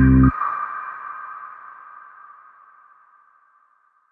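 Background music cuts off abruptly just after the start, leaving a single high ringing note that fades slowly to silence near the end.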